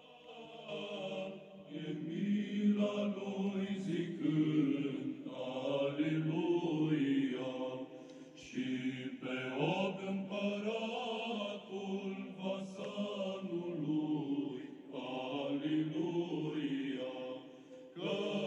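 Church chant: voices singing slow, drawn-out melodic phrases, with short breaks about eight and fifteen seconds in.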